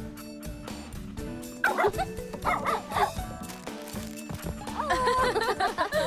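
Cartoon dachshund puppy yipping and whimpering over background music, in two bouts: about two seconds in and again near the end.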